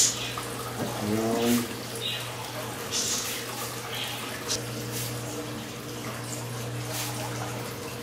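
Hand-pump spray bottle misting water onto hair: several short hissing spritzes a second or more apart.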